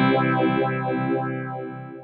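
Electric guitar chord played through an MXR Phase 90 phaser pedal, ringing out with a slow sweeping swirl and fading away near the end.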